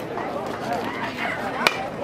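Spectators' voices murmuring, with a single sharp crack of a baseball about a second and a half in, as the batter swings at the pitch.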